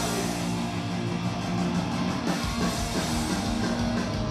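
Pop-punk band playing live at full volume: electric guitars, bass and drum kit, with sustained chords and steady drumming.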